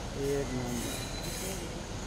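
A man's voice says a single word early on, over a steady hiss of outdoor background noise, with a faint high whine about halfway through.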